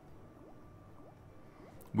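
Faint bubbly blips from an online slot game's sound effects: a short rising chirp about every half second while the reels spin. A man starts to speak right at the end.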